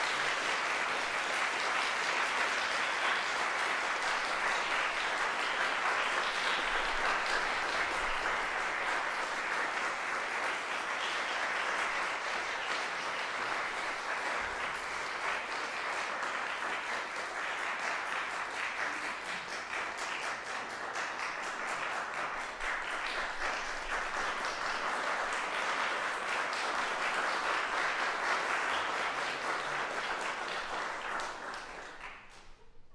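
Audience applauding steadily, a dense sustained clapping.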